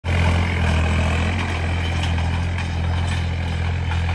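John Deere tractor's diesel engine running steadily under load as it pulls a tillage implement through dry soil, a constant low hum.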